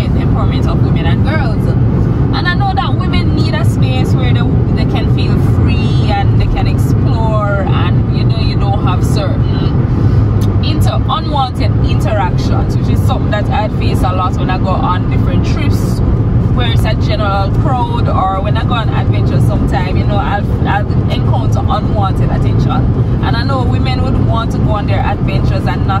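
A woman talking inside a moving Suzuki car, over a steady low drone of road and engine noise in the cabin.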